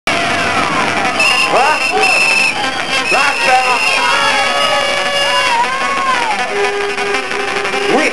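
Loud hardcore rave heard from the club floor: music with high held tones and pitched sweeps that rise and fall, mixed with shouting voices.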